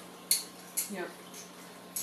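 Two sharp, light clicks of small hard objects being handled, the first the louder, with a short spoken "yep" just after the second.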